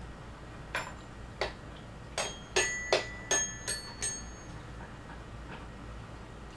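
A toddler striking the metal bars of a toy xylophone: about eight uneven notes at different pitches, each ringing briefly, over the first four seconds, then the playing stops.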